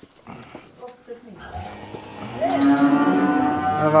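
A cow mooing: one long, drawn-out call that starts softly about a second and a half in and grows loud just past halfway.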